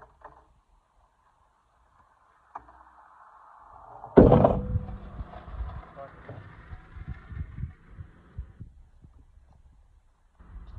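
Skateboard wheels rolling on concrete, building up, then a loud sharp smack of the board about four seconds in. The board goes on rolling with several irregular knocks and clatters until it stops about eight and a half seconds in.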